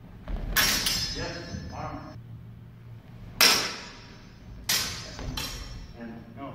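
Steel longsword blades clashing in sparring: a series of sharp clangs, two close together about half a second in, the loudest about three and a half seconds in, and two more near the end, the first ones ringing briefly.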